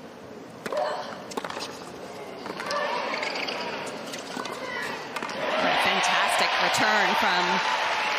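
Tennis ball struck by rackets in a doubles rally: a few sharp hits. About five seconds in, the arena crowd breaks into loud cheering and shouting as the point ends.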